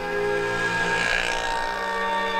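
Soft background music with long held tones, while an auto-rickshaw engine passes, its noise swelling about a second in and then fading.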